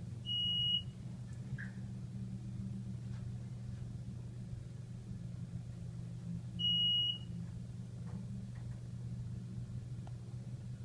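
Two short, high electronic beeps about six seconds apart from an Otis Series 1 hydraulic elevator's signal, sounding as the car passes floors on its way down. Underneath is a steady low hum from inside the moving car.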